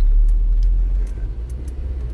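Steady low engine and road rumble inside the cab of a taxi van on the move, with a few faint clicks.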